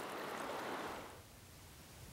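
Faint, steady rush of flowing river water around a wading angler, fading down about a second in.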